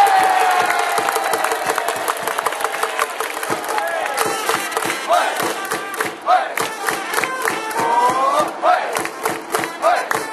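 Baseball stadium crowd cheering and shouting after a base hit, with many hands clapping. The cheering is loudest at the start and then settles into rhythmic clapping and chanted calls.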